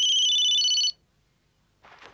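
Electronic telephone ringtone: high beeping tones stepping between a few pitches for about a second, then cutting off abruptly.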